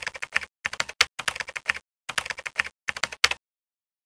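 Computer keyboard typing sound effect: several short runs of rapid key clicks with brief pauses between them, stopping shortly before the end.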